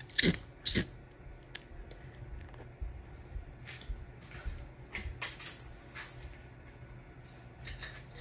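Light clicks and metallic jangling from a Hunter Stratford ceiling fan's pull chains as they are handled and pulled, the pull-chain switch clicking as the light kit is turned on.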